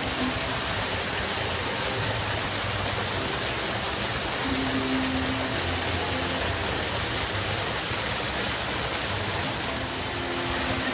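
Steady rushing of water from the artificial waterfall in the lion enclosure, with a few faint low tones underneath.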